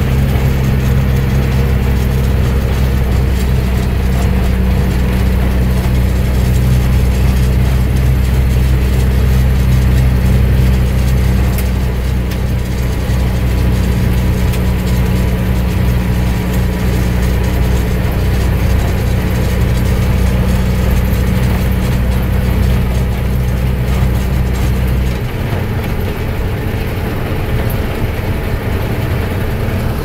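Truck engine and gravel-road noise heard from inside the cab while driving, a steady low drone. About 25 seconds in the drone eases off and drops lower.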